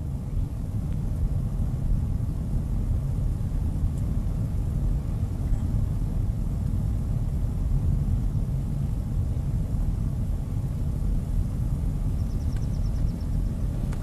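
Steady low rumble of a car on the move, heard from inside the cabin: engine and road noise, even throughout.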